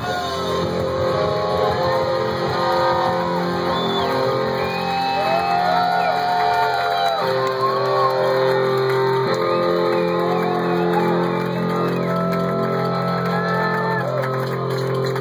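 Punk rock band playing live, led by loud electric guitar: held chords that change a couple of times.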